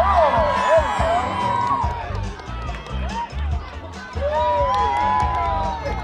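Crowd of spectators cheering and calling out to dogs racing down the course, with many high voices rising and falling, loudest at the start and again near the end. Background music with a steady bass beat runs underneath.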